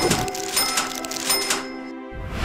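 Cash-register 'ka-ching' sound effects, three in quick succession about two-thirds of a second apart, each a sharp clink with a bright ringing chime, over background music with held notes.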